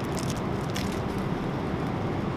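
Steady drone of a jet airliner cabin in flight, with a few faint clicks and crinkles from the amenity kit's items being handled.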